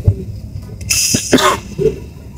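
A cough about a second in, followed by a short throat clearing.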